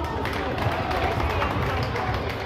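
Echoing din of an indoor futsal game in a large sports hall: indistinct voices of players and spectators, with running footsteps and scattered knocks of the ball on the wooden court.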